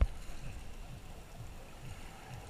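Muffled sloshing of seawater around a GoPro's waterproof housing as it dips at and below the surface, opening with one sharp knock.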